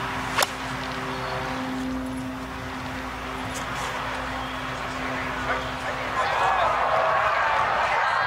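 A golf club striking the ball on a full swing: one sharp crack just under half a second in. From about six seconds in, crowd noise rises as spectators react to the shot.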